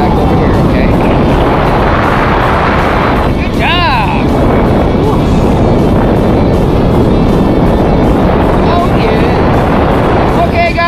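Steady rush of wind over the camera microphone of a tandem parachutist gliding under an open canopy, with a short voice call about four seconds in.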